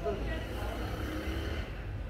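Street background: a steady low rumble of road traffic with faint, indistinct voices.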